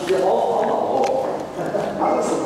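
Indistinct speech-like voice without clear words, with two sharp clicks about a second apart.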